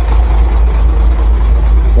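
Truck engine idling close by: a steady low rumble.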